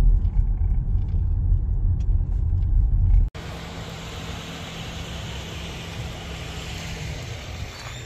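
Low rumble of a Toyota Fortuner's engine and tyres heard from inside the cabin as it creeps along. About three seconds in it cuts abruptly to quieter outdoor traffic noise with a steady low hum of idling vehicles.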